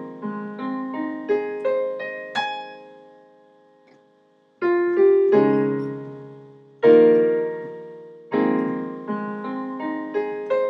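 Digital piano playing an A-flat major arpeggio (A-flat, C, E-flat) that climbs to a high note about two seconds in and rings out. After a brief pause come three chords of the 6-7-1 progression in A-flat, then another chord and the rising arpeggio again near the end.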